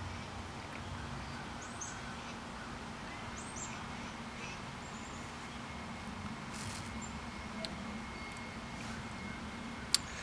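Quiet outdoor ambience: a steady low hum with a few faint, short, high bird chirps, and a thin steady tone through the middle part.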